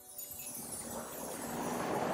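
Added shimmering chime sound effect: high tinkling tones falling in pitch over a whooshing swell that starts suddenly and builds in loudness.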